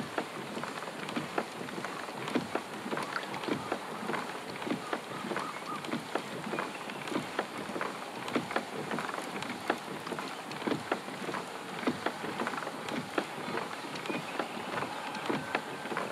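A trolling reel being cranked to bring a hooked kokanee to the kayak, heard as light, irregular ticking over a steady hiss.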